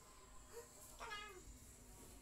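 Near-silent room tone with one faint animal call about a second in, falling in pitch over about half a second.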